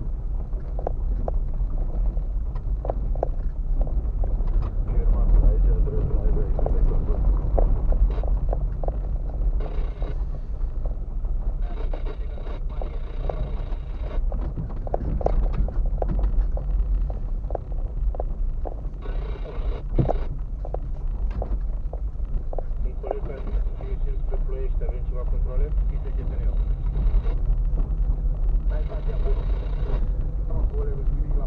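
Car cabin sound while driving over a rough dirt and gravel track: a steady low rumble of engine and tyres, with frequent small knocks and rattles as the car rides over ruts and stones.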